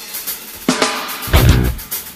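Rock song at a stop-start break: the band drops out, leaving a single drum hit about 0.7 s in and a short loud burst of kick and snare about a second later.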